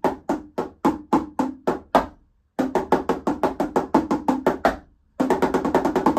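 Marching tenor drums (quads) played with sticks: even single strokes about three or four a second until about two seconds in, then after a short pause a fast run of notes swept across the drums, and after another brief pause a still faster run near the end.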